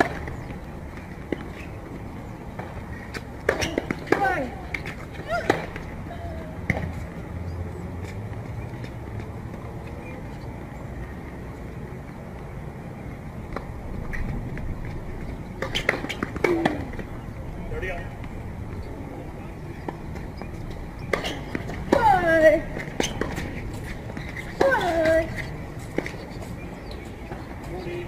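Tennis ball struck by rackets and bouncing on a hard court in a few short clusters, with brief voices, calls or grunts, among them. A steady outdoor background murmur runs underneath.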